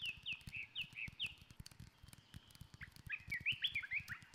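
Birds chirping: four quick downward chirps in the first second, then a thin steady whistle and a flurry of chirps near the end, over a faint crackle.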